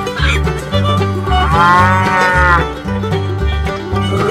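A cow's moo sound effect: one call of about a second, rising then falling in pitch, near the middle, over banjo-led bluegrass background music with a steady beat.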